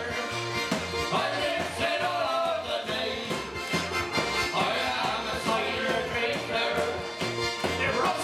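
Folk band playing live, with the piano accordion to the fore over acoustic guitar, banjo and a hand-held frame drum keeping a steady beat.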